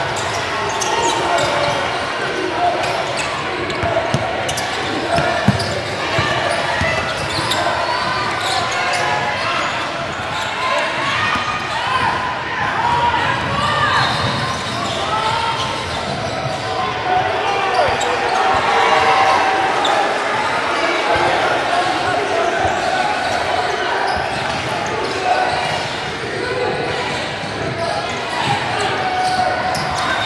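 Live indoor basketball game: a basketball being dribbled on a hardwood court with sharp bounces, under steady overlapping crowd chatter and shouts from spectators, all echoing in a large gym.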